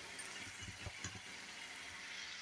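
Faint, steady sizzling of chopped onions, green chillies and curry leaves frying in oil in a nonstick kadai.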